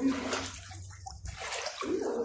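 River water sloshing and lapping around a person standing chest-deep in it.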